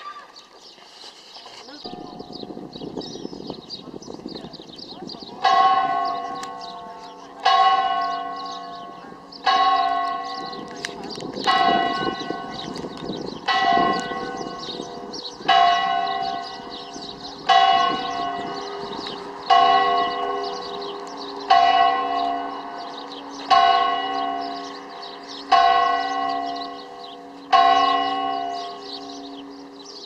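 The church bell of Nossa Senhora da Nazaré tolling: one bell struck twelve times, about two seconds apart. The strokes start about five seconds in, and each rings on and fades into the next.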